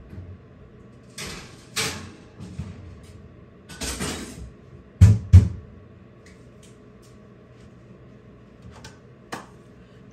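Off-camera handling noises: short rustling or scraping bursts, then two sharp knocks about half a second apart, the loudest sounds, and two light clicks near the end.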